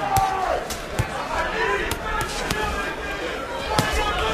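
About seven scattered sharp thuds from two boxers exchanging at close range in the ring, over a murmuring arena crowd.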